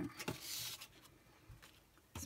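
A card being picked up, turned over and laid face-down on a work mat: a soft paper rustle and slide about half a second in, then a faint tap.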